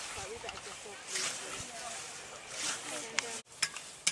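A scythe blade swishing through long meadow grass with each mowing stroke, three strokes about a second and a half apart.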